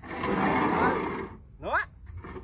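Welded steel ramp scraping and rattling as it is pushed across the ground, a loud rough noise lasting about a second and a half before dying away.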